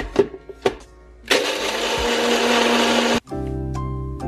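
Two clicks as a NutriBullet blender cup is set onto its motor base. About a second later the blender motor runs at full speed for about two seconds, blending crushed ice, with a steady hum under loud whirring, and then cuts off suddenly.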